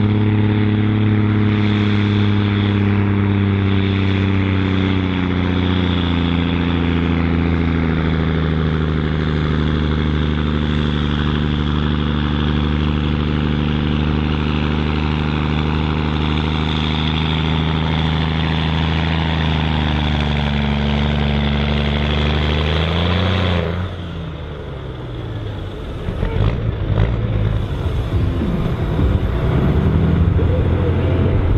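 Scania 114G 340's 11-litre six-cylinder diesel pulling a weight sledge at full load, its pitch sinking slowly as the sledge's drag builds. A little over three quarters of the way through, the engine note drops off sharply and goes quieter as the pull ends, followed by irregular clattering and rumbling.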